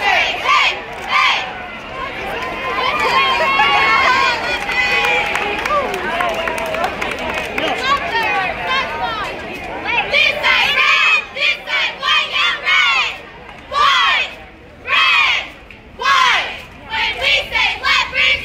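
A crowd of many voices shouting and cheering together, then from about ten seconds in a cheerleading squad yelling a cheer in unison: short shouted words in a steady rhythm with brief pauses between.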